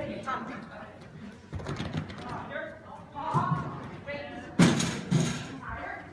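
A person calling out short words in a large covered hall, broken by sudden loud thuds about one and a half seconds in and twice near the end.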